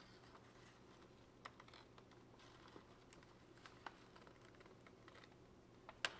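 Faint, scattered clicks and rustles of stiff paper as a paper model power supply, trailing paper cable strips, is pushed into a paper model computer case, over a low steady hum.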